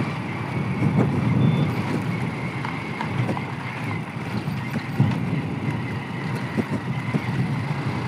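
Hero Splendor motorcycle's single-cylinder four-stroke engine running steadily at cruising speed, heard from the rider's seat mixed with wind and tyre noise on a rough dirt road.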